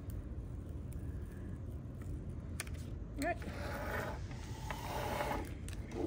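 Paper backing being peeled off a small sheet of adhesive vinyl under transfer tape, a faint crinkling and crackling, strongest a little after the middle.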